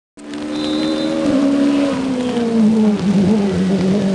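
Citroen C2 Super 1600 rally car's engine heard approaching, loud and steady, its pitch falling gradually as the revs drop.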